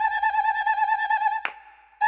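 Yamaha PSR-EW425 keyboard sounding a synthetic bird-tweet effect: a rapidly trilling whistle held for about a second and a half, then a sharp click.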